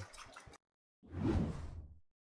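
A whoosh transition effect from the broadcast graphics: a single swish starting about a second in, swelling quickly and fading out over about a second.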